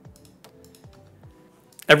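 Light clicking of a computer keyboard, a scatter of key clicks in the first second, over faint lo-fi background music.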